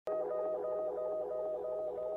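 A steady electronic tone pulsing about three times a second, the lead-in to a title card's intro music.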